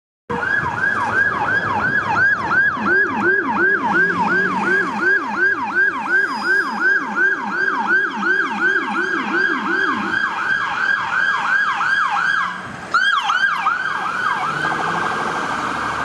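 Electronic siren of an EMS fly car, a Ford Explorer, sounding a fast yelp of about three falling sweeps a second, with a lower-pitched sweep moving in step for roughly the first ten seconds. Near the end it breaks off briefly, gives a short sharp blast, then switches to a much faster warble.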